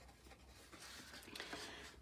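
Faint rustling and sliding of cardstock as a small folded paper box is handled and opened out by hand, a little louder from under a second in.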